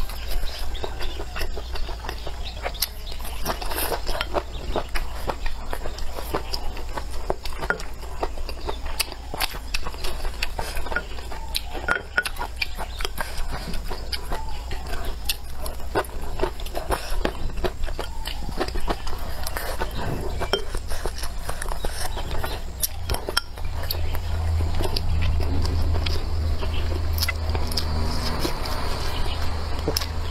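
Kitchen work sounds during cooking: irregular knocks and clinks of utensils and cookware. Under them is a steady low hum that grows louder for the last several seconds.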